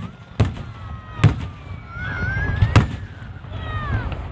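Aerial firework shells bursting: three sharp bangs, at about half a second, a second and a quarter, and near three seconds in.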